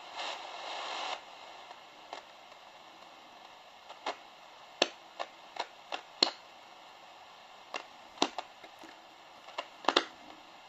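Selga-404 transistor radio hissing on an empty band while its tuning wheel is turned, with no station coming in. The hiss is louder for about the first second and then drops to a faint hiss, broken by scattered sharp clicks and crackles.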